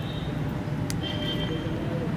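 Road traffic going by: a steady low engine rumble, with a sharp click just before a second in and a short high tone right after it.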